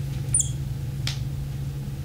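Marker writing on a glass lightboard: a couple of short, high squeaks and a faint scratch as the pen tip drags across the glass, over a steady low hum.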